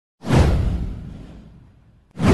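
A single whoosh sound effect over a deep low rumble. It starts suddenly, and its hiss sweeps downward in pitch as it fades away over about a second and a half.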